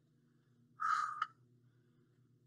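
A short, breathy exhale with a croak to it, about half a second long near the middle, from a man pressing a pair of dumbbells up while lying on his back.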